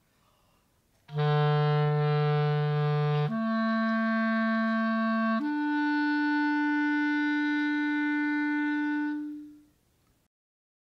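Clarinet playing a slow ascending exercise in its low register: three long, steady notes, each higher than the one before. It starts about a second in, and the last note is held about four seconds before fading away. This is a beginner embouchure exercise, played with a steady forward air stream and no movement of the lips or jaw.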